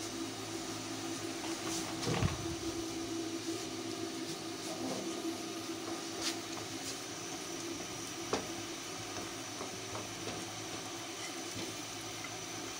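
Steady hiss of lit gas stove burners and almond and coconut pieces frying lightly in ghee in a non-stick pan, with a few soft knocks of a silicone spatula stirring them.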